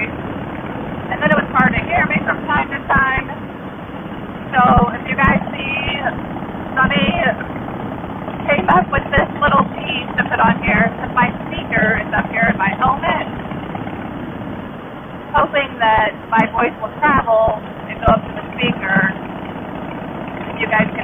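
A woman talking, her words muffled and hard to make out, with a few short pauses, over a steady background of wind and the engine of her Harley-Davidson Fat Boy as she rides.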